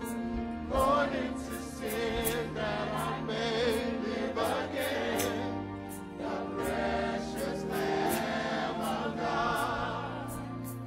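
A gospel choir singing in a church, the voices held with vibrato, over instrumental accompaniment with sustained low notes and a steady beat.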